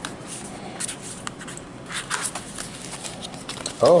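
Paperboard phone packaging handled by hand as it is opened: light scraping, rustling and small taps of cardboard and paper under the fingers, a little louder about two seconds in.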